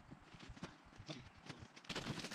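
Faint, scattered light knocks and taps over a quiet outdoor background, with a sharper knock near the end.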